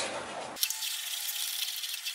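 Wooden spoon stirring thick, chunky barbecue sauce in a pot, with light wet scraping and small clicks against the pan.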